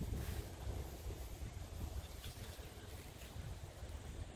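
Wind buffeting a phone microphone outdoors: an uneven low rumble with faint hiss above it.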